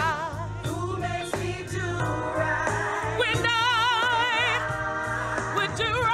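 A woman singing a gospel solo into a microphone, holding long notes with a wide vibrato, a long held note in the middle, over a steady low instrumental accompaniment.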